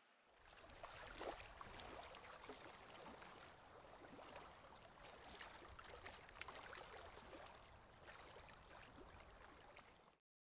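Near silence: a faint, even hiss with scattered small crackles, starting just after the beginning.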